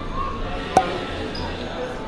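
A single sharp knock about three-quarters of a second in, over faint background voices.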